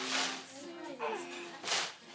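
A toddler's straining grunts and wordless vocal sounds while she hauls a big plastic jug. Two loud rushing, hissy noises come at the start and again near the end. Background music plays throughout.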